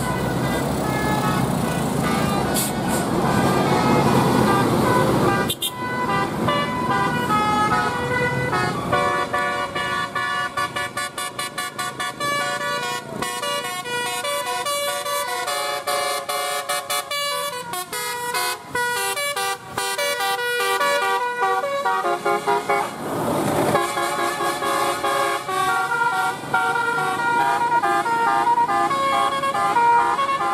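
A tour bus's telolet horn, a set of electrically switched air horns, playing a tune in quick jumping notes, with several tones sounding at once. In the first few seconds a bus engine passes, and about 23 seconds in there is a short rush of a passing vehicle.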